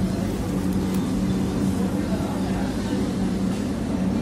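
A steady, low mechanical hum with a strong low drone, unchanging throughout.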